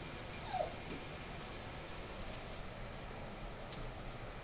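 A Border Collie puppy gives one short, falling whimper about half a second in, then only faint room hiss with a couple of small clicks.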